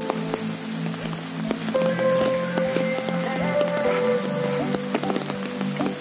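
Background music over steady rain falling, with many small drop impacts heard through it.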